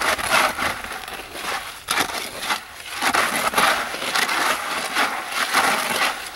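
Wet Quikrete concrete mix being stirred in a plastic five-gallon bucket: continuous gritty scraping and churning that swells and eases with each stroke, with an occasional knock against the bucket, as dry mix is worked up off the bottom. The mix is a little soupy.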